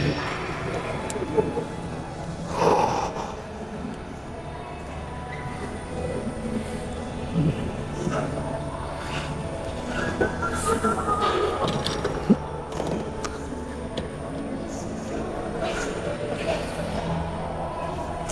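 Gym background: indistinct voices and faint music, with a single sharp knock about twelve seconds in.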